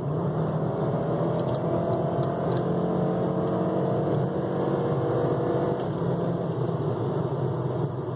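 Turbocharged 2.3-litre five-cylinder engine of a 1995 Volvo 850 T-5R at wide-open throttle, heard from inside the cabin, pulling the car from about 55 to over 70 mph with a slowly rising pitch. It is under-boosting, which the owner suspects is caused by a broken or leaking bypass (blow-off) valve.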